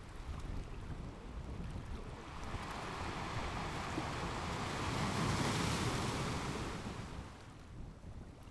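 Rushing water and wind of a large surging wave, swelling from about two seconds in to a peak, then fading away near the end.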